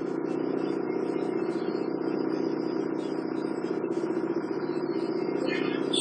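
Steady background hum of room noise, even and unbroken, with no clear events.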